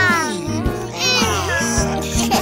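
Cartoon voices giving two long stretching or yawning calls that slide down in pitch, one at the start and one about a second in, over a children's song backing with steady bass notes.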